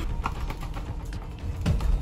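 Low steady rumble inside a car, with a scatter of small clicks and rustles and a dull thump near the end.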